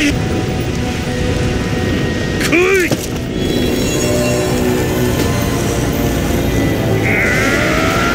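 Anime battle soundtrack: dramatic score over a dense rumble of action sound effects. A short, wavering vocal cry comes a little over two seconds in, and a long, falling cry starts near the end.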